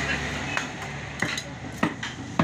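Butcher's knife cutting beef on a wooden chopping block: a few sharp, irregular knocks of the blade on meat and wood over a steady background noise.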